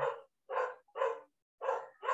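A dog barking: four short barks, about half a second apart.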